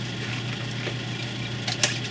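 Steady low hum of workshop equipment, with a light click or two near the end as the heat-softened headlight lens and housing are pried apart.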